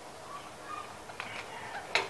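Faint metal handling of a carpenter's brace chuck being tightened by hand on a drill bit, with one sharp click near the end as the bit is set against the wood.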